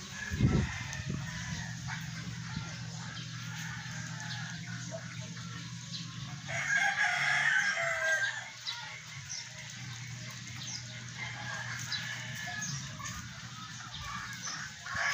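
A rooster crowing once, about six and a half seconds in and lasting under two seconds, over a steady low hum, with a low thump near the start.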